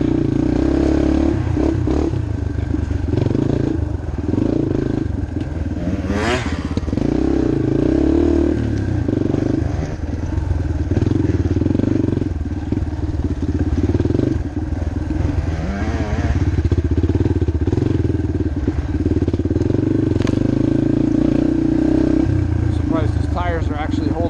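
Yamaha TTR230 trail bike's air-cooled single-cylinder four-stroke engine running under load, its revs rising and falling continuously as the bike is ridden.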